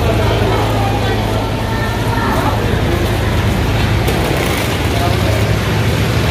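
A steady low engine rumble, with indistinct voices of people around it.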